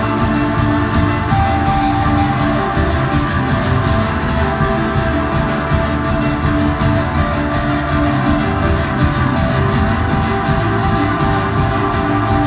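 Live rock band playing loud, dense instrumental music on keyboards, electric guitars, bass and drums, with held notes and a steady level throughout. It is recorded on a phone from within the audience.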